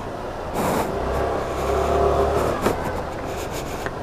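Motor scooter engine pulling away and accelerating, swelling over a couple of seconds and then easing off, with street traffic noise.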